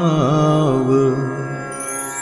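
A male voice sings a Kashmiri devotional vaakh, holding the last syllable of the verse with a wavering pitch over a steady drone. The voice stops about a second in, leaving the drone, and a bright chime comes in near the end.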